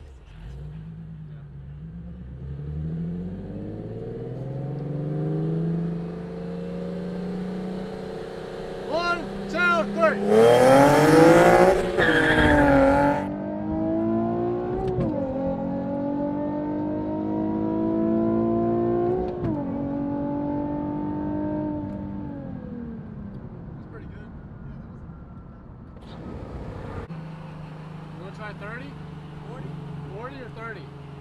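A Nissan VQ-series V6 accelerating hard, heard from inside the car's cabin during a roll race. Its pitch climbs steadily with a loud rush of noise about ten seconds in, then climbs again with two sharp drops at upshifts before falling away as the throttle comes off and settling to a low steady cruise.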